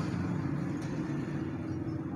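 An engine running steadily at idle, a low, even hum with no change in pitch.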